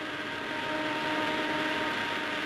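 Steady drone of aircraft engines: a few held tones over a hiss, growing slightly louder in the first second.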